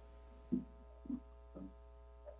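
Steady electrical mains hum with a set of fainter steady higher tones above it. It is broken by three short, low, muffled sounds about half a second apart.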